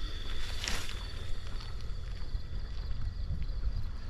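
Outdoor wind buffeting the microphone, an uneven low rumble, with a brief hiss just under a second in.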